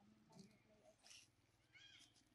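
A baby macaque gives a short, high squeak near the end, over faint rustling of dry leaves.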